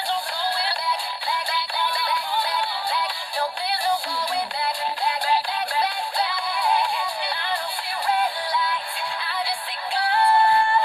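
A young girl singing a pop song unaccompanied in a thin voice with no low end, the melody running on without a break.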